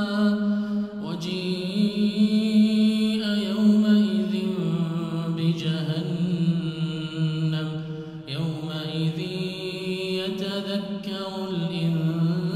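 A man's melodic Quran recitation in Arabic, chanted in long drawn-out phrases whose pitch rises and falls. There are short pauses between phrases about a second in and about eight seconds in.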